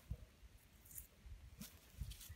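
Near silence, with a few faint rustles and small knocks of handling in soil and grass.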